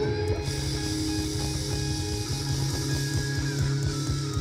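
Live rock band playing an instrumental passage: electric guitars and bass over a steady drum beat.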